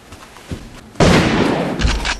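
Gunshot sound effect: a sudden loud shot about a second in that rings out briefly, followed by a second, shorter shot near the end.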